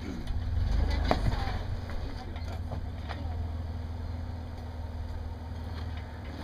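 Toyota Tacoma pickup's engine running at low revs as the truck crawls up onto a large boulder, a little louder for the first second or so and then steady.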